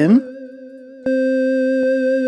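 Teenage Engineering OP-1 synthesizer playing a sustained note with its tremolo LFO envelope set to fade the effect in. The note drops away just after the start, leaving a fainter, slightly wavering tail, then is struck again about a second in and holds steady.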